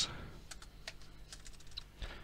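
Computer keyboard typing: a scatter of light, irregular key clicks.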